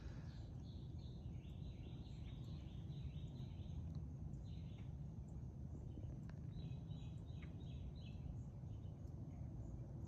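Outdoor background with a steady low rumble and a bird calling in two runs of quick repeated notes, about a second in and again past the middle.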